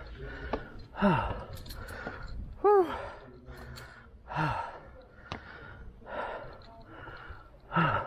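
A man breathing hard, with voiced sighs and gasps about every one and a half to two seconds. He is out of breath from climbing a long flight of stone stairs.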